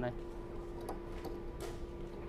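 A few light clicks and a short scrape as a battery-charger plug is handled and fitted into the charging port of a floor-scrubber machine, over a steady low hum.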